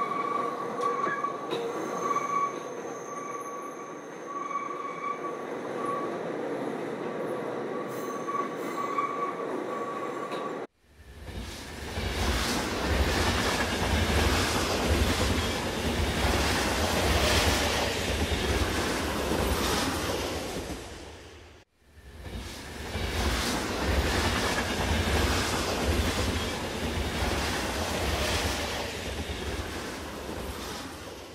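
Passenger train heard from inside the car: for about the first eleven seconds a steady hum with a thin, high whine. The sound then cuts off abruptly and gives way to a much louder rumbling noise with a deep low rumble. That noise breaks off sharply again a little past twenty seconds and resumes.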